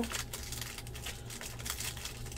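Foil wrapper of a 2016 Bowman Draft jumbo pack of baseball cards crinkling and tearing as it is ripped open by hand: a quick string of small crackles and rustles.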